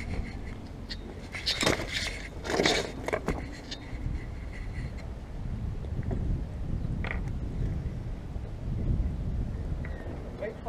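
Shirt fabric rubbing and brushing against a body-worn camera's microphone, over a steady low rumble, with a few short scrapes and knocks in the first few seconds.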